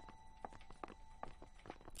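Faint footsteps on a hard floor, about two to three steps a second.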